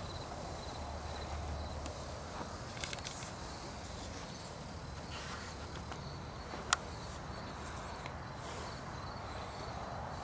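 Crickets chirping in a steady pulsing pattern, under a thin high whine that stops about six seconds in. A single sharp click sounds about seven seconds in.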